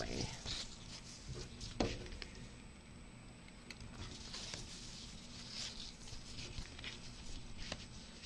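Soft rustling and crinkling of a large sheet of stamped cross-stitch fabric being turned around and smoothed flat by hand, with a sharp crackle about two seconds in.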